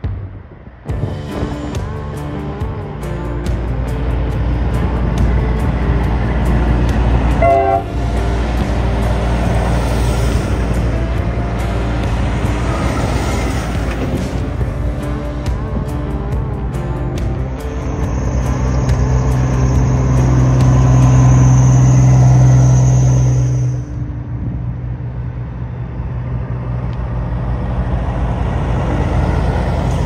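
Parade of semi trucks driving slowly past, their diesel engines running. A loud steady tone is held for about six seconds past the middle.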